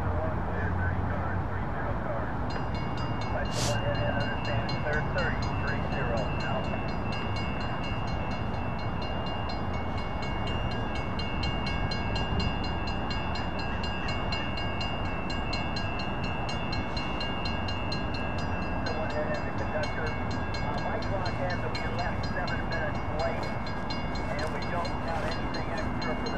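Railroad crossing warning bells start ringing about two and a half seconds in and keep ringing with rapid, even strikes: the crossing has activated for an approaching train. A low, steady hum of background traffic lies underneath.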